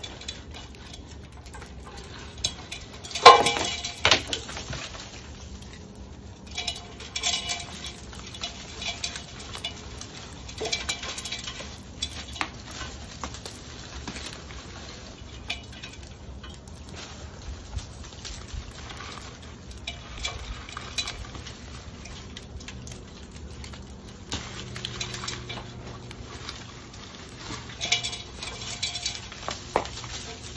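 An old bird nest of dry straw being pulled out of a roof eave by gloved hands: scattered spells of rustling and scraping as handfuls of nest material and debris come loose. A sharp knock about three seconds in is the loudest sound.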